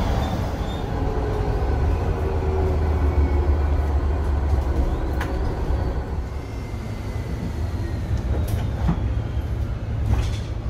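Bus cabin noise with a steady low drone, over which faint high whistles from the Voith DIWA automatic gearbox slide slowly in pitch. The whistle is the gearbox's typical sound as the bus brakes.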